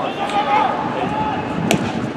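A baseball popping into the catcher's mitt: one sharp smack about one and a half seconds in, over background voices in the ballpark.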